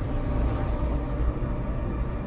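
Deep, steady rumble of a cinematic sound effect depicting the universe tearing itself apart in a Big Rip.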